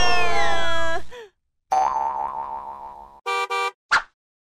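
Cartoon sound effects: a loud layered effect of tones sliding up and then down cuts off about a second in. A wobbling tone follows, then two short beeps and a click near the end.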